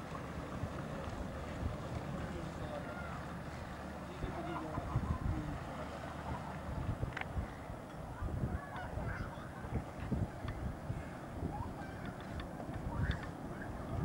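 Wind rumbling on the camcorder microphone, with faint short calls that rise and fall in pitch now and then over it.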